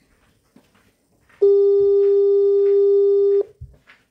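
A single loud, steady electronic beep tone, about two seconds long, starting a little over a second in and stopping abruptly.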